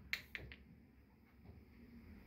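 Pool balls rolling after a shot and knocking against each other and the rails: three sharp clicks within about the first half second, the first the loudest.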